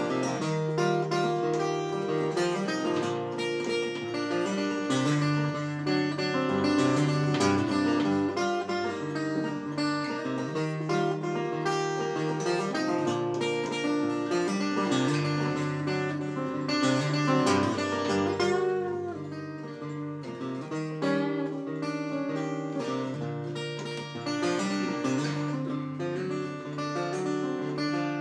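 Solo acoustic guitar playing the instrumental intro of a song, a continuous run of chords that change every second or so.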